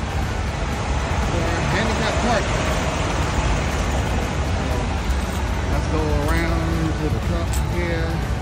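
Steady low rumble of idling semi-truck diesel engines across a truck-stop lot, with faint voices in the background.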